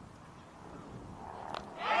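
Faint outdoor ambience, then about a second and a half in a single sharp crack of the cricket bat striking the ball, followed at once by rising cheering and voices.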